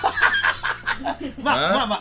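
People chuckling and laughing during studio talk, quick bursts of laughter in about the first second, then halting speech.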